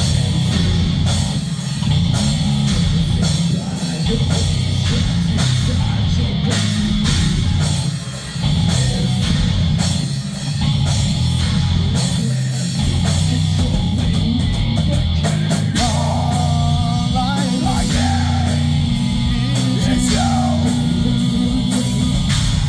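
Live hard rock band playing loud and amplified: bass guitar, electric guitar and drum kit, with a voice singing over the music in the second half.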